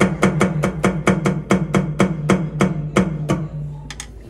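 Alesis Strike Pro electronic drum kit being played by a small child: a steady run of single drum hits, about four a second, that stops about three and a half seconds in.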